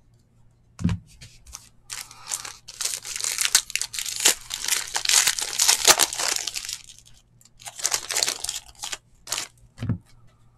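Foil trading-card pack wrapper being torn open and crinkled by hand, in crackly bursts from about two seconds in to about seven seconds, then again briefly near the end. There are two short soft knocks, one about a second in and one just before the end.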